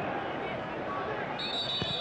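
Football stadium crowd noise with a referee's whistle blown about one and a half seconds in, a short high steady blast.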